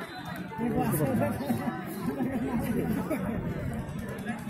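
Spectators' voices: several people talking and calling out over one another, with no single clear speaker.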